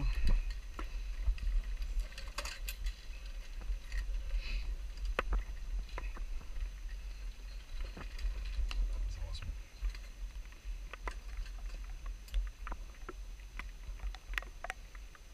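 A steady low rumble on the helmet camera's microphone, with scattered light metallic clicks and clinks of zipline harness gear and carabiners.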